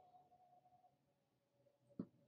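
Near silence: faint room tone, with one short click at the very end.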